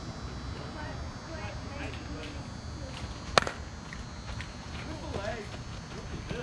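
Softball bat striking a pitched ball once, a single sharp crack about three and a half seconds in.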